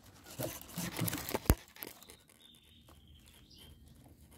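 Knife cutting into a firm Grammatophyllum speciosum (giant orchid) pseudobulb: faint, irregular scraping and crackling in the first half, with one sharp click about a second and a half in.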